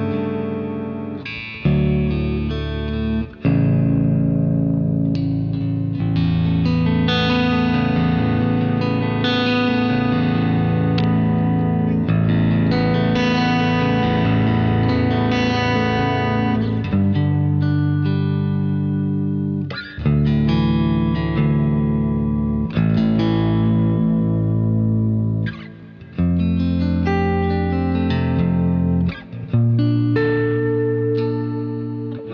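Baritone electric guitar, freshly restrung with a 14–68 string set, played through heavy distortion. It plays low riffs and sustained ringing chords, stopping briefly every few seconds.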